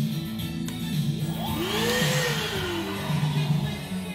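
Milwaukee M18 Fuel Packout wet/dry vacuum switched on briefly: its motor whine rises and then winds back down within about a second and a half, with a rush of air. Background music with guitar runs underneath.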